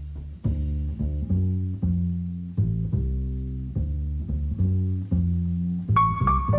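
Music: a plucked bass line of low notes, about two a second, each note struck and left to fade.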